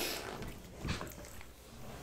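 Upholstered couch squeaking as a person shifts her weight on it, with one short squeak about a second in.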